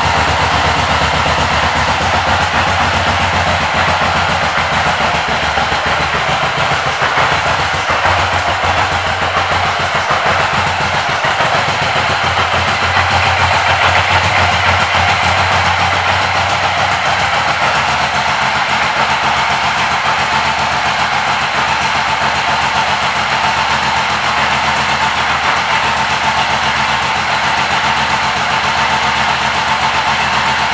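2011 Suzuki Boulevard M109R's 1783 cc V-twin idling steadily, with a deep, even pulse and no revving.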